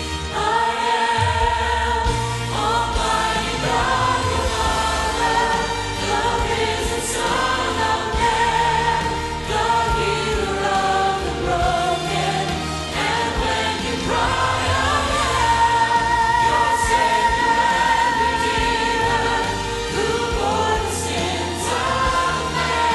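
Mixed choir singing in sustained, held phrases over instrumental accompaniment.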